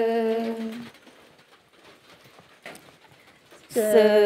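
A singer's voice holding one long, steady sung note of a traditional Karen 'saw' song, ending about a second in; after a quiet pause of about three seconds, the singing comes back near the end on a wavering note.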